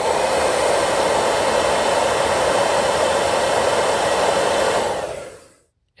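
Handheld hair dryer running, a loud steady blowing noise as it heats the temperature sensor, fading out about five seconds in.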